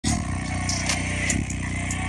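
JBL Flip 6 Bluetooth speaker playing a bass-heavy test track, recorded close up. Deep sustained bass notes run under a ticking hi-hat beat, starting abruptly at the very beginning.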